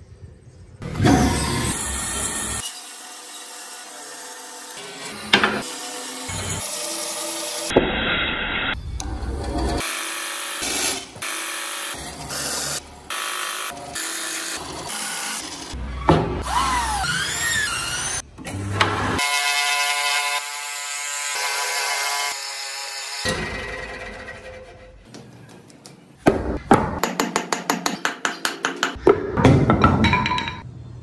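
Woodworking sounds cut together in quick succession: a band saw running and cutting through a solid wood block, then, near the end, a fast run of sharp strikes on wood, about four a second.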